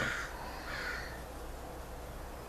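Two short harsh bird calls, the second about half a second long, over a steady low hum.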